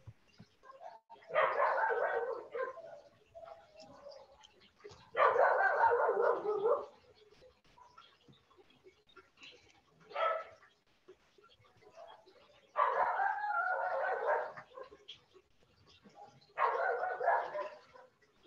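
A dog barking in five bouts of rapid barks, each lasting about a second or so, with quiet gaps between, heard through a video-call microphone.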